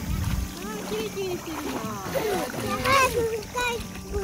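Pool water splashing as a toddler scoops it onto his face with his hands. Young children's voices run through it, and a high-pitched child's voice rises about three seconds in.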